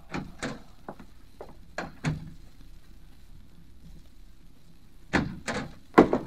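Radio-drama sound effects of a door being locked up: a run of light knocks and clicks in the first two seconds, a lull, then two sharper knocks about five seconds in.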